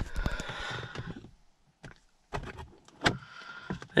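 Rustling handling noise, then a few separate sharp plastic clicks and knocks from about two seconds in: the sun visor and its vanity-mirror flap being moved and clicked against their fittings in the car cabin.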